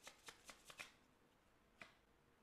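Tarot cards being shuffled in the hands, faintly: a quick run of soft card flicks in the first second, then a single flick near the end as a card is pulled from the deck.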